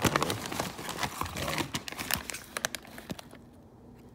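Paper seed envelope crinkling and rustling in the hands, a dense run of crackles that thins out about three seconds in.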